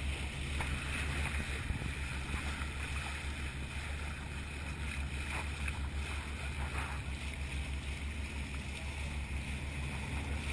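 A catamaran's bow moving through open water: a steady rush of water against the hull, with wind buffeting the microphone as a low, fluttering rumble underneath.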